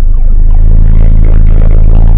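A car driving along a dirt road, heard loud from inside the cabin by the dash cam, with music coming in about half a second in on steady, held low notes.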